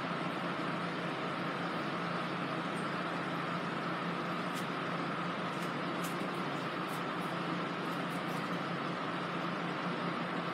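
Steady hum and hiss of a room air conditioner running, with a faint held tone over it and a few soft clicks from handling.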